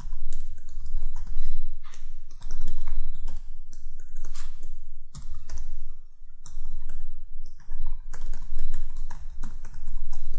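Computer keyboard typing: a quick, irregular run of keystrokes, about four a second, each with a low thud carried into the microphone.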